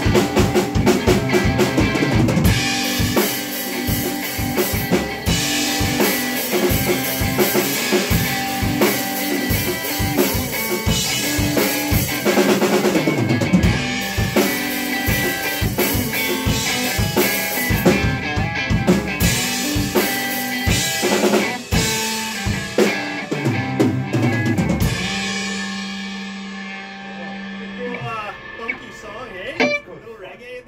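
Live drum kit and electric guitar jamming a groove, with kick, snare and cymbals driving under guitar riffs. About 25 seconds in, the drums stop and a held guitar note rings on and slowly fades out.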